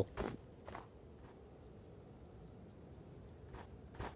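A few faint, separate footstep sounds, one soft step at a time: two in the first second and a half, then a long quiet stretch, then two more near the end.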